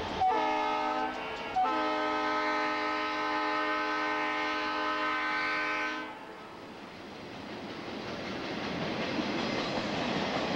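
Conrail diesel locomotive air horn sounding a short blast and then a long one. As it stops, the rumble and clickety-clack of the trailer-on-flatcar cars rolling past builds up.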